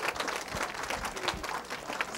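Audience applause: many people clapping together in a steady, even patter.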